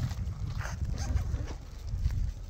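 Wind buffeting the microphone as a steady low rumble, with a few brief sharp noises about half a second and a second in.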